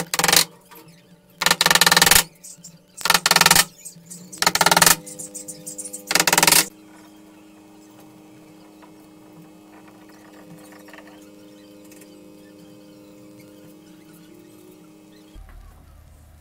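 A hammer striking a plywood strip: five short bursts of rapid blows, each about half a second, over the first seven seconds. After that only a faint steady hum.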